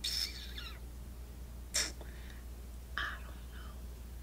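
A woman's hushed, breathy voice slowly drawing out three words, with long pauses between them. Under it runs a steady low hum.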